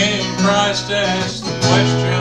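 Steel-string acoustic guitar strumming chords as accompaniment to a gospel song, with a fresh chord struck about one and a half seconds in.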